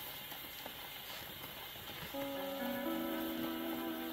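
A 78 rpm shellac record playing acoustically on a Victor Orthophonic Victrola: the needle runs in the lead-in groove with steady surface hiss and crackle, and about two seconds in the Hawaiian dance band's introduction begins with held chords.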